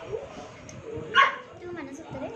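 A puppy gives one short yip about a second in.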